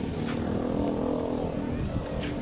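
A motor vehicle's engine drones at a steady pitch, swelling and fading over about a second and a half, over a low rumble.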